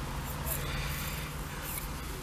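Quiet steady background with a couple of faint, brief rustles as a broken-necked glass bottle is turned over in the hand.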